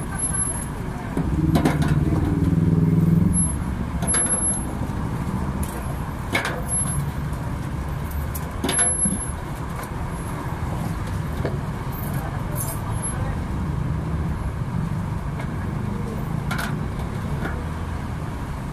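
Steady low rumble of road traffic, with a louder low drone passing about one to three seconds in. Light clinks of stainless steel coffee-making utensils come every few seconds.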